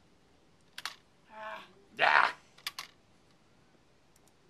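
A few sharp computer keyboard clicks: one about a second in and a quick pair near three seconds. A short voiced murmur comes at about one and a half seconds, and a brief loud burst of noise follows at about two seconds.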